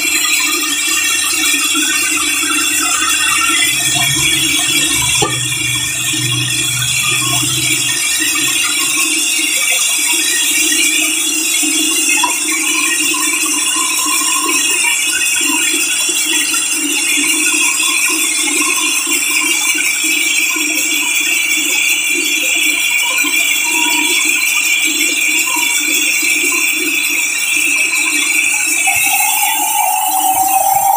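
Large band saw running steadily as its blade rips lengthwise through a big hardwood slab: a continuous mix of motor hum and high-pitched saw whine. A higher tone rises in near the end.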